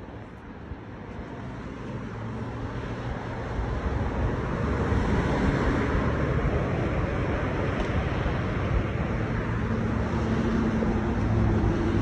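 Road traffic on a multi-lane road: cars passing, growing louder over the first few seconds and then holding steady.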